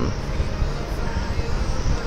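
Steady rushing noise with a low hum underneath, even throughout.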